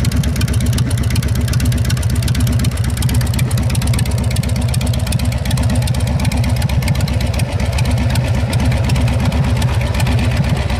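Engine of a custom motorized bar stool idling steadily with a rapid pulsing beat.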